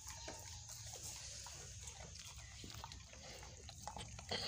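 Faint sounds of a Labrador eating off the floor: small irregular smacks and clicks of chewing and licking over a low steady hum.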